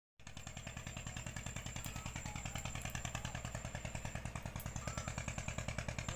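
Motorboat engine chugging steadily at about seven beats a second. It starts abruptly and grows slightly louder.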